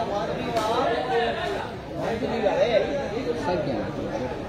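Several people talking at once: loose, overlapping chatter of voices.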